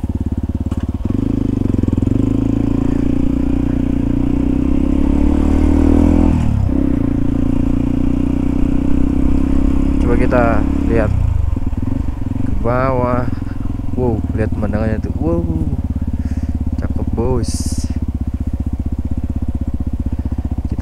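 Yamaha WR155R's single-cylinder four-stroke engine under way, its revs climbing, then dropping sharply at a gear change about six seconds in, then running steadily.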